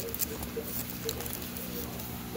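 Plastic comic bags and backing boards rustling and clicking as fingers flip through a cardboard longbox of bagged comics, a scatter of light ticks in the first half.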